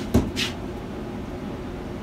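A short thump just after the start, followed by a brief hiss, over a steady low background hum.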